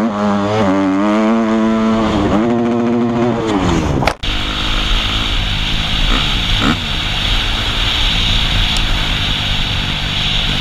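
A dirt bike engine revving up and falling back several times, heard from a helmet camera while riding a motocross track. After a brief break about four seconds in, a dirt bike runs more steadily under rushing wind noise.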